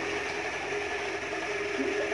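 A steady machine hum with a constant droning tone.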